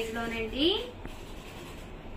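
A woman speaking briefly for about the first second, her pitch rising at the end, followed by a quieter stretch of faint background noise.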